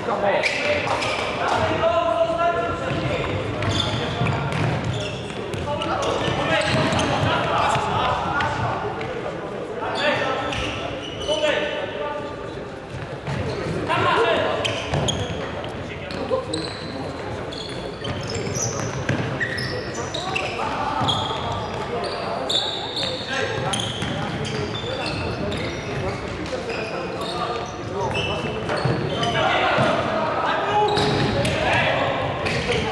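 Futsal being played on a wooden sports-hall floor: the ball being kicked and bouncing, shoes squeaking, and players calling out to each other, all echoing in the large hall.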